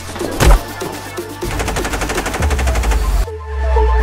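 Electronic dance remix track: heavy hits, then a fast, even run of sharp hits for about two seconds that cuts off suddenly into a short break of held synth tones over bass.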